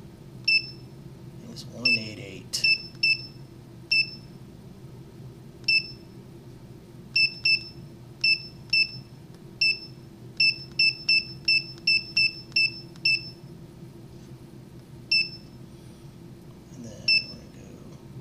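Handheld digital vane anemometer beeping at each button press as a pipe's cross-section area is keyed in. About two dozen short, high beeps come at irregular intervals, with a quick run of them from about ten to thirteen seconds in.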